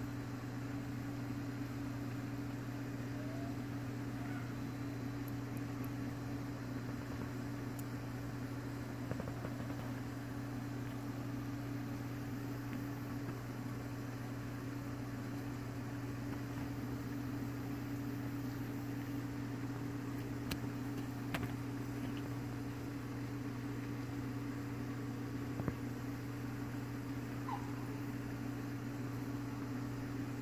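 Steady low electric motor hum that holds an even pitch throughout, with a few faint clicks about two-thirds of the way through.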